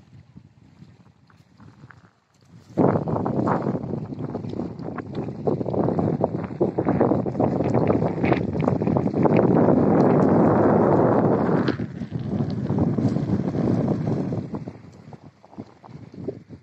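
Wind buffeting the microphone in a strong, uneven gust that starts suddenly about three seconds in and dies away near the end.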